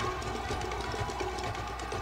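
A steady, rapid drum roll building suspense before a winner is announced.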